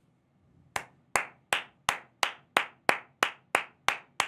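One person clapping slowly and steadily, about ten claps at roughly three a second, starting under a second in.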